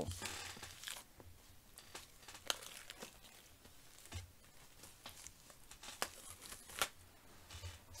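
Faint crinkling and tearing of thin plastic shrink-wrap foil being peeled off a mediabook case, with a few sharp clicks from handling the case.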